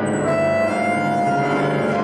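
Bassoon and grand piano playing classical music together, with a long held bassoon note in the middle; the phrase comes to a close at the end.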